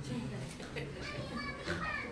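Young children's high voices chattering and calling, well below the level of the main speaker's voice.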